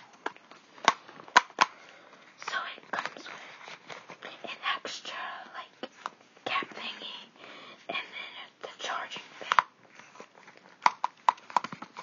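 Hands handling white cardboard and paper Apple packaging: sharp taps and clicks with rustling in between, and a quick run of taps near the end. Soft whispering runs over it.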